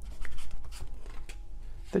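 Tarot cards being handled as a card is drawn from the deck: soft rustling and sliding of card stock, with a few light flicks.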